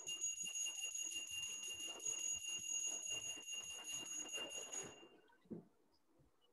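A bell ringing continuously with rapid strokes on two steady high tones, stopping about five seconds in.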